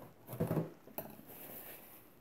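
Paper towel rustling and crinkling as it is picked up, folded and pressed onto a watercolour painting, with the loudest handling sounds about half a second in and a light tap about a second in.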